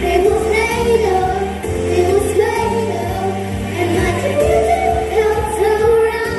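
Young girls singing a pop medley into handheld microphones over a backing track with steady bass notes.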